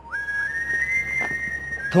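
A high, pure-toned melody of long held notes, flute- or whistle-like, that steps up in pitch through the middle and settles back down near the end.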